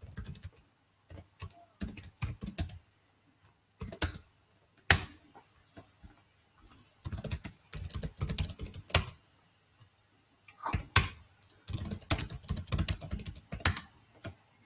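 Computer keyboard typing: several bursts of quick keystrokes separated by short pauses, with a few single louder strokes.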